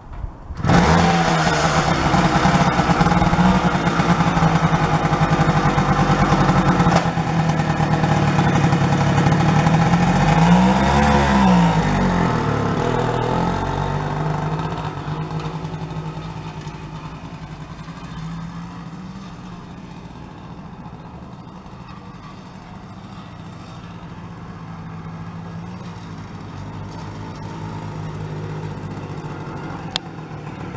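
A 1960 NSU Quickly moped's 49 cc two-stroke single-cylinder engine is pedal-started and catches within the first second. It then runs, revving up and back down once about ten seconds in. This is the engine running again on a newly fitted coil, condenser, points and plug. It then fades as the moped rides away and grows louder again as it comes back near the end.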